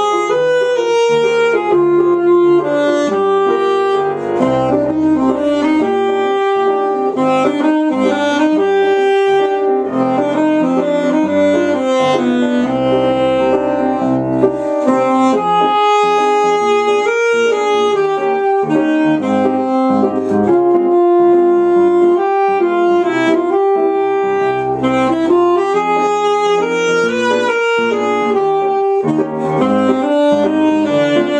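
Alto saxophone playing a lyrical waltz melody with grand piano accompaniment.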